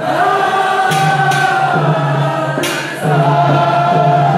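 Men's voices chanting together in an Islamic mawlid devotional chant, long held notes sung in unison, with a few sharp strikes that fit the frame drums being held.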